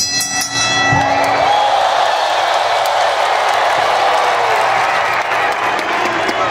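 Large arena crowd cheering, a loud, steady roar with shouts rising and falling through it, after a brief chord of ringing tones in the first second.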